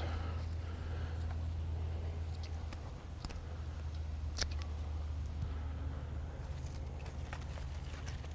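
Quiet handling of flower stems being worked into an arrangement: a few soft clicks over a steady low hum.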